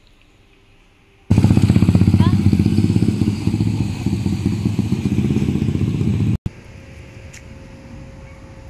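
A loud engine running close by, a fast even pulse that starts suddenly about a second in and cuts off about six seconds in, leaving a much quieter steady background.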